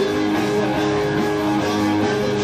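Live rock band playing, with a Stratocaster-style electric guitar to the fore over electric bass and drums, the guitar holding long notes.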